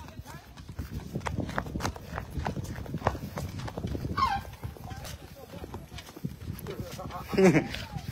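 Footsteps on a dirt road, a steady run of short ticks, while a voice calls out about halfway and voices come in near the end.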